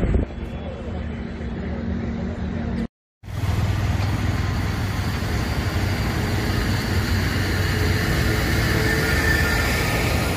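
Steady roadside traffic noise with a low engine rumble, broken by a brief silent gap about three seconds in.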